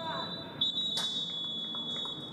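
Referee's whistle: the tail of a short blast, then a long steady shrill blast of about a second and a half, the final whistle ending the match.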